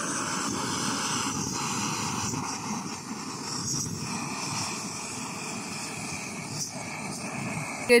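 Upright gas-canister camping stove burning steadily under a lidded pot: an even, unbroken hiss.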